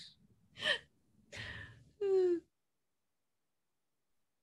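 A person's short vocal sounds: a gasp, a breathy sigh and a brief voiced sound falling in pitch, all within the first two and a half seconds, then dead silence.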